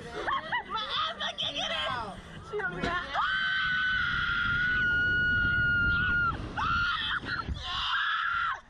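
Women's excited laughing and shrieks on a reverse-bungee slingshot ride, then, about three seconds in, one long high scream held for about three seconds as the ride flings them upward, with a low rush of wind on the microphone. A shorter scream follows near the end.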